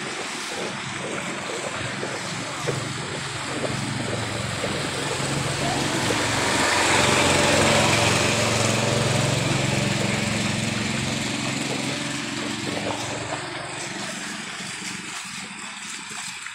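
Small motorcycle engine running over a hiss of splashing water. It grows louder to a peak about halfway through and then fades, as a sidecar tricycle passes close by through the flood.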